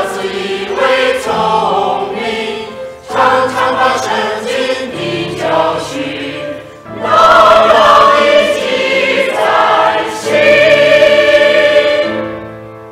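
Mixed choir of men's and women's voices singing a Chinese hymn in phrases, growing louder in the last phrases and closing near the end. The singers are a virtual choir, each voice recorded separately and mixed together.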